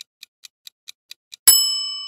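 Quiz countdown-timer sound effect: clock ticking about four and a half times a second, then a loud bell ding about a second and a half in that rings and fades, signalling that time is up.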